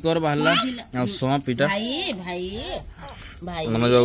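People's voices talking, with a steady high-pitched insect drone running underneath.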